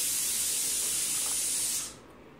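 A steady high-pitched hiss lasting just under two seconds that starts and stops abruptly.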